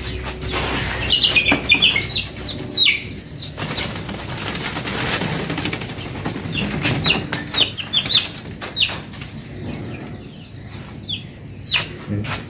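Caged birds flapping their wings in a flurry as a hand reaches in to catch one, with clusters of short, high chirps about a second in and again around seven seconds.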